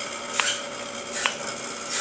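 Stationary exercise bike being pedaled: an even click a little faster than once a second, over a steady hum.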